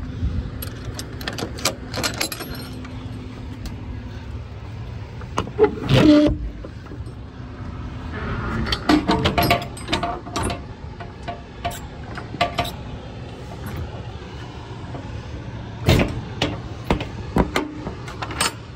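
Metal clanks and knocks of semi-trailer swing-door hardware being worked by hand, with a loud bang about six seconds in, over a steady low hum.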